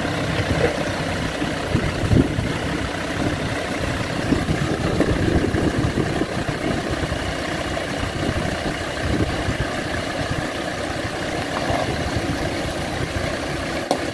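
Land Rover Discovery 2 engine running steadily at low revs as the 4x4 crawls slowly over wet rock in a stream bed.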